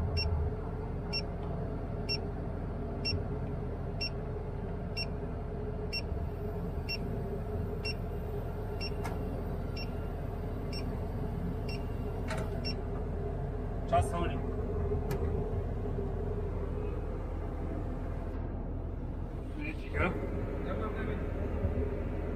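Crane diesel engine and hydraulics running steadily, heard from inside the operator's cab, with an electronic warning beeper chirping about once a second during automatic ballasting. The beeping stops about halfway through, and a few sharp clicks and a knock follow later.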